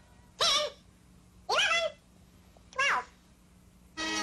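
A cat meowing three times, about a second and a quarter apart, each meow rising and then falling in pitch.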